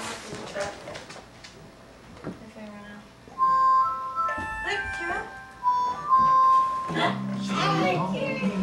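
A simple electronic jingle of clean, beeping single notes, like an ice cream truck tune, starts about three seconds in after a quieter opening; voices come in near the end.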